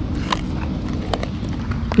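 A few light, scattered clicks and crackles of a plastic-and-card lure box being handled and opened by hand, over a steady low background rumble.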